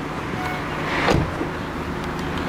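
A single dull thump about a second in, over a steady low hum.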